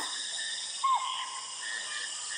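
Steady high-pitched chorus of forest insects, with a single short falling call about a second in.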